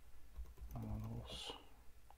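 Keystrokes on a computer keyboard, typing a command into a shell, with a brief murmur of a man's voice about a second in.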